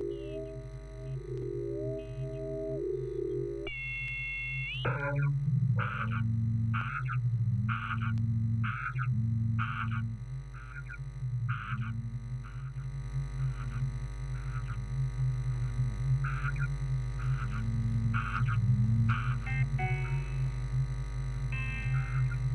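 Live modular synthesizer music. Gliding sine tones swoop up and down for the first few seconds, with a brief high tone near four seconds. From about five seconds a low pulsing drone takes over, with short high blips and swooping mid tones repeating about once a second.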